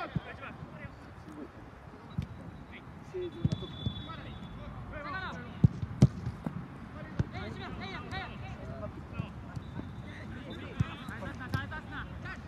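Soccer ball being kicked: scattered sharp thuds, the loudest two in quick succession about six seconds in, with players' distant shouts and calls across the pitch between them.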